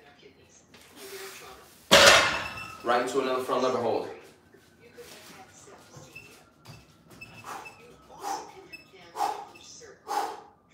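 A loaded barbell (275 lb of plates) set down on the floor after the last deadlift rep: one heavy thud about two seconds in, the loudest sound here. Right after it comes a loud vocal exhale from the lifter, then several short hard breaths.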